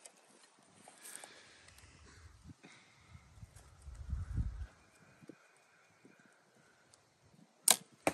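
Bear Archery Royale compound bow shot: a single sharp snap as the string is let go and the arrow leaves, near the end, after several seconds of near-quiet hold at full draw.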